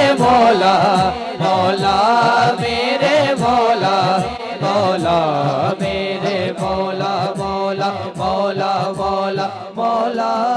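Devotional naat singing: a man's voice sings a melodic line over a steady low drone of chanting voices, with short low beats repeating through it.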